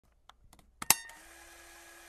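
A few faint clicks, then two sharp clicks close together about a second in, followed by a faint steady hum.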